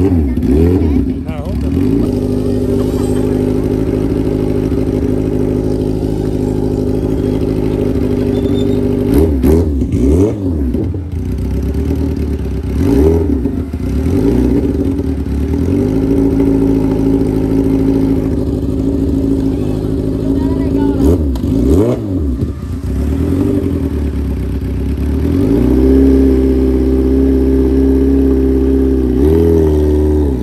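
Kawasaki Ninja H2's supercharged inline-four engine running at a steady note on the drag strip start line, revved briefly several times and growing louder near the end.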